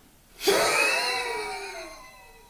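A sudden, breathy vocal cry that starts about half a second in, slides down in pitch and fades away over about a second and a half.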